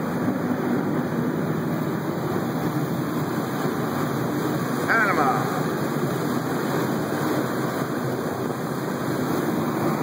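Steady rushing noise of a catamaran under way on open water: water along the hulls and wind on the microphone. About five seconds in there is one short pitched sound that slides down in pitch.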